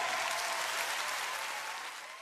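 Audience applauding at the end of a sung number, the clapping fading down toward the end.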